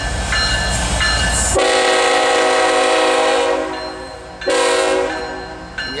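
Freight diesel locomotive's multi-note air horn sounding one long blast of about two seconds, then a short second blast, as the train passes close by. Before the horn, a low engine rumble and a bell ringing at an even beat are heard.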